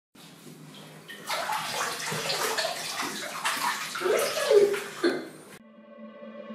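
Water splashing and sloshing, louder from about a second in, with a few plopping drops; it cuts off suddenly near the end.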